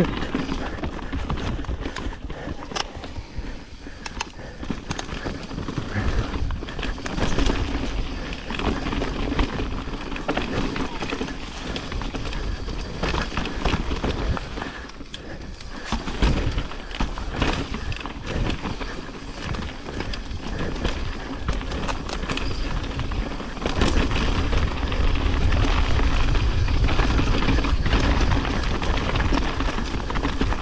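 Mountain bike riding down a rocky dirt trail: tyres rolling over dirt, leaves and rock, with frequent sharp knocks and rattles from the bike over the bumps. Wind noise on the microphone runs throughout and gets heavier over the last few seconds.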